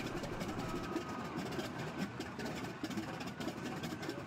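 Grumman TBM Avenger's Wright R-2600 fourteen-cylinder radial engine running on the ground, propeller turning, shortly after start-up while it is still smoking; a steady, even drone.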